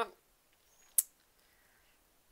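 Quiet, with one short, sharp click about a second in.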